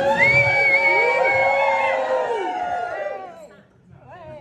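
A room of wedding guests calling out a toast together, many voices at once with long drawn-out notes. They trail off and die away about three and a half seconds in.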